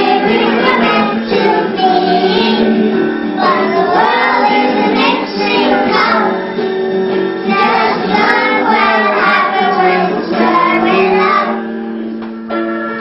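A group of young children singing a song together, with steady instrumental accompaniment underneath.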